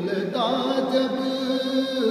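A man singing a ghazal, drawing out a long held note with a dip and rise in pitch about half a second in.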